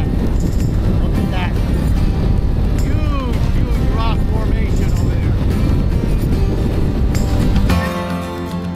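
Harley-Davidson touring motorcycle riding down a winding road: a loud, steady rush of engine and wind noise. Background music with a sung melody plays under it.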